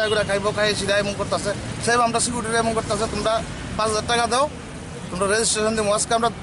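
A man speaking, with a short pause a little after the middle.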